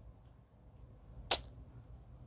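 Near quiet in a pause of speech, with one short, sharp click about a second and a quarter in.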